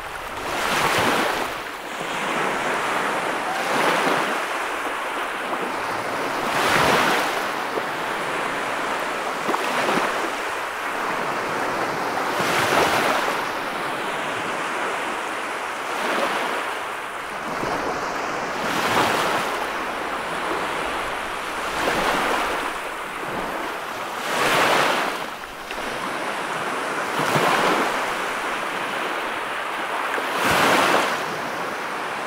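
Sea surf breaking and washing up a sandy beach: a continuous rush of foaming water that swells as a wave comes in about every three seconds.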